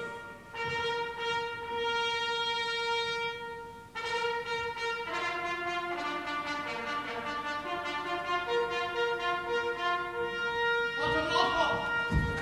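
Offstage trumpet fanfare: a long held note, then a run of repeated and moving notes. It is the signal that announces the minister's arrival.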